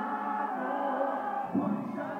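Live concert music heard from within the audience: a man singing long held notes into a microphone, with a new phrase starting near the end.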